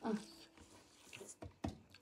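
A short 'ah' from a man, then a few faint mouth clicks and smacks as he eats rice with his hand.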